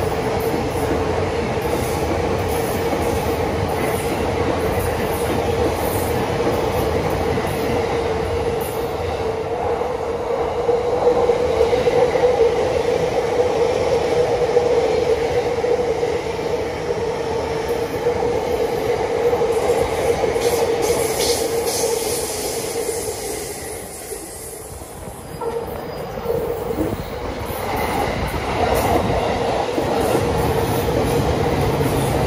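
JR Chuo Line rapid commuter trains (E233 series) running past on the tracks: a continuous running noise of wheels and motors with a steady hum. It dips briefly near the end, then swells again as another train passes.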